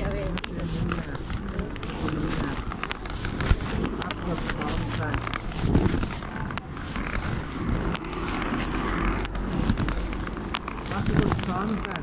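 Indistinct voices, with scattered clicks throughout.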